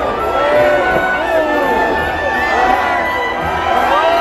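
Large crowd cheering and shouting, many voices overlapping at once.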